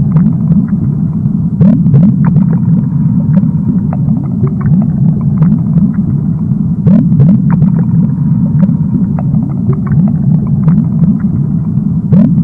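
Underwater ambience: a steady low rumble crowded with short rising bubbling chirps and scattered small clicks.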